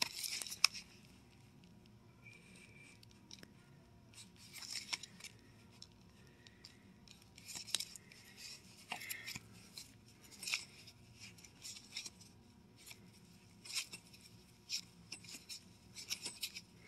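Cardboard record sleeves rubbing and scuffing against each other as vinyl LPs are flipped through in a bin: a string of short, irregular, faint swishes and scrapes.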